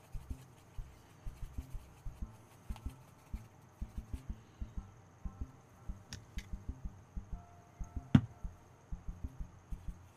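Paintbrush dabbing and mixing acrylic paint on a plastic palette: a run of soft, irregular taps, several a second, with one sharp click about eight seconds in.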